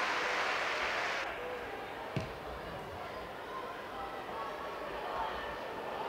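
Football stadium ambience from a small crowd, with a steady hiss of crowd noise that cuts off suddenly about a second in. Faint distant shouts follow, and one sharp thud of a ball being kicked comes about two seconds in.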